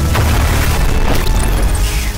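Dramatic anime soundtrack music over a deep, sustained booming rumble, with a high whooshing sweep that rises and falls in the second half.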